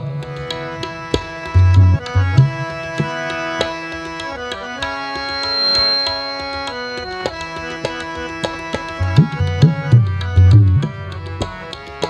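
Instrumental passage of Sikh kirtan: harmonium melody with tabla accompaniment. The tabla's deep bass strokes come in near the start and again after about nine seconds, while around the middle the harmonium holds long notes over lighter drumming.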